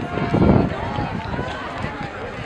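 Indistinct voices of people talking and calling out, with a low uneven rumble on the microphone that is loudest about half a second in.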